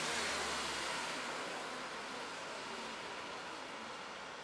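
A car passing on the street, its tyre and road noise fading away as it moves off.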